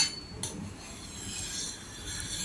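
Metal spatula scraping on a hot round crepe griddle, working under the edge of a jianbing (Chinese egg crepe) to loosen it for flipping. A sharp click at the start and another about half a second in, then soft, steady scraping.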